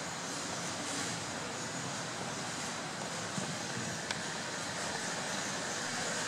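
Steady background hiss of room tone through an open microphone, with one faint click about four seconds in.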